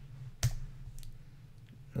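A single sharp computer keyboard key click about half a second in, the Enter key that runs a typed terminal command. Two fainter clicks follow, over a low steady hum.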